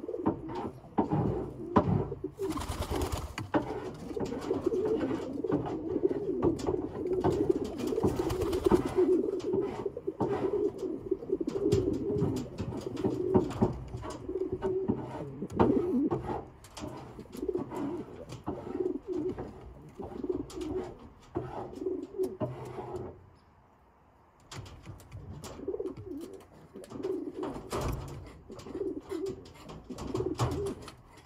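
Domestic pigeons cooing, low throaty coos repeated almost without pause for the first half, then more sparsely, with a short lull about three-quarters of the way through. Two short bursts of noise come in around three and eight seconds in.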